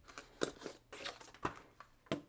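Cardboard product box and its plastic tray insert being handled during unboxing: a quick run of short scrapes, rustles and clicks as the box is opened and the card reader is lifted out of the tray.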